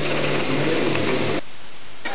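Studio room tone: a steady hiss with a low hum. About one and a half seconds in it cuts off abruptly to a quieter hiss.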